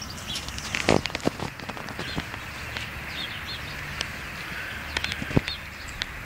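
Small birds chirping in short, scattered calls over a steady low background rumble, with a few sharp clicks, the loudest about a second in and another near the end.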